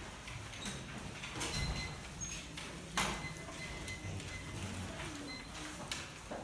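Quiet classroom room noise while students do seatwork: papers rustling and small knocks from desks and chairs, with one sharp knock about three seconds in. A faint, steady high-pitched tone runs through the middle.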